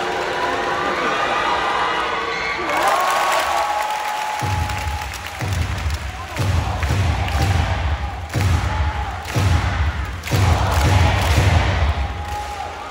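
Basketball arena crowd cheering and chanting. From about four seconds in, loud arena music with a heavy, pulsing bass beat plays over the crowd during a free throw.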